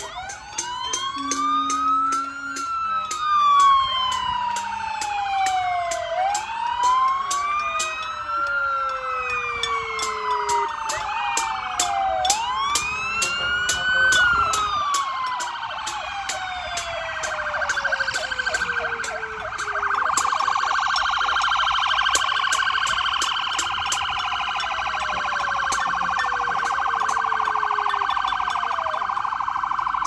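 Several emergency-vehicle sirens sounding at once as a procession passes. Slow wails rise and fall over a few seconds each and overlap one another. After about twenty seconds they give way to a fast, steady warble.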